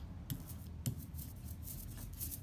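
Small rubber brayer being rolled back and forth through water-based ink on a glass slab, giving a faint run of light clicks with a sharper click just under a second in.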